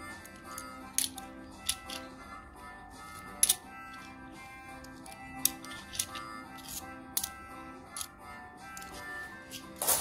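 Background music, over sharp metallic clicks of 2-euro coins knocking against each other as they are handled one by one in a stack held in the palm. The clicks come irregularly, roughly one a second, and are the loudest sounds; the sharpest is about a third of the way in.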